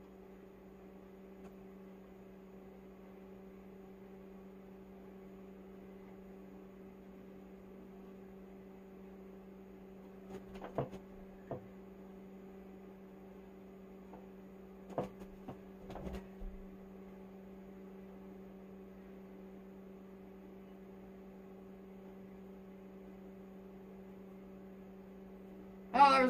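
Faint steady electrical hum, with a few soft knocks and clicks about halfway through.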